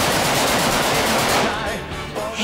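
Rapid automatic gunfire, one long burst of closely spaced shots that stops about one and a half seconds in.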